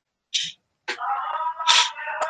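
A person's voice: a short breathy sound, then indistinct voiced sounds with a sharper hissy burst near the end.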